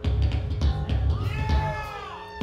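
A live rock band of bass, drums and guitar comes in loudly at the start, with heavy bass and drum hits. In the second half a high note slides up and then back down over the band.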